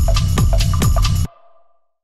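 Electronic psytrance track with a steady kick drum about twice a second under bass and hi-hats. It cuts off suddenly a little past halfway, leaving a short echoing tone that fades away.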